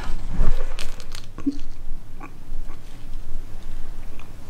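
Foil tube of hair dye crinkling as it is squeezed and pressed out in gloved hands over a glass bowl, with scattered clicks and crackles.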